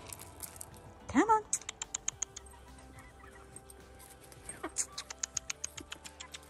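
Quick runs of sharp ticking clicks, about seven a second, as chicken feed pellets are scattered over dry leaf litter and pecked up by hens. A woman's short rising call comes just before each run, about a second in and again near the end.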